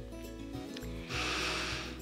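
Soft background music, with a woman's audible breath drawn in through the nose for just under a second, starting about a second in.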